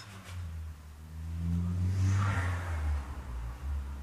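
A low, engine-like rumble with a faint hum in it that swells to a peak about two seconds in and then eases off.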